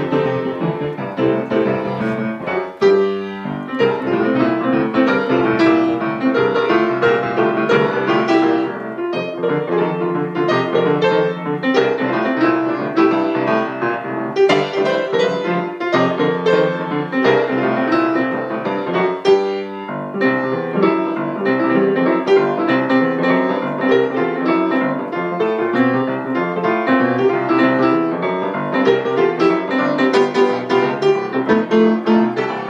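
Yamaha grand piano played solo in a swinging jazz style: fast, dense runs of notes with two brief breaks, a few seconds in and just before the twenty-second mark.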